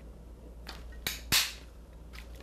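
Handheld double-sided paper bow punch pressed down through a scrapbook paper strip, giving two sharp clicks about a third of a second apart, the second louder.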